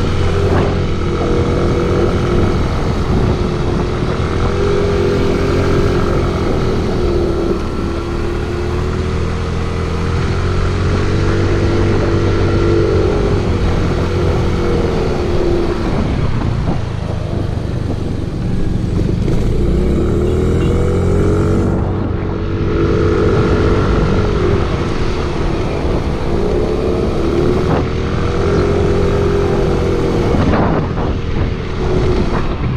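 Motorcycle engine running while being ridden, its pitch rising and falling again and again as the throttle opens and eases.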